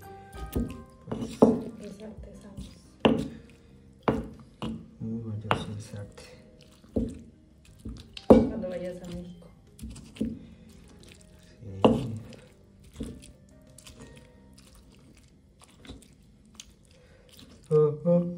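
Stone pestle pounding and grinding onion and chile in a volcanic-stone molcajete: separate crushing thuds at an uneven pace, roughly one every second or so.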